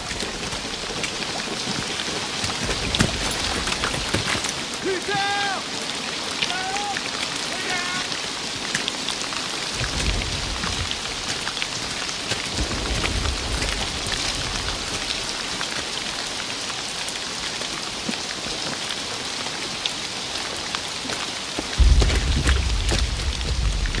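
Steady heavy rain falling, with low rumbles swelling at about 10 and 13 seconds and a louder one near the end. A few brief faint voice-like calls come about a quarter of the way in.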